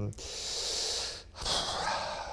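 A man breathing audibly close to a handheld microphone: two breaths, each about a second long, with a brief gap between them.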